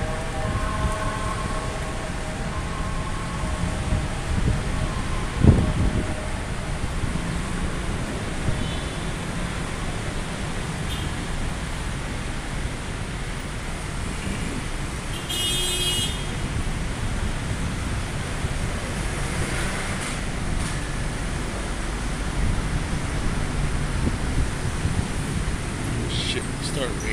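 Steady low rumble of city road traffic, with a single sharp thump about five seconds in and a brief high-pitched tone near the middle.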